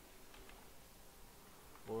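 Faint steady background hum with a few soft keystrokes on a computer keyboard as code is typed.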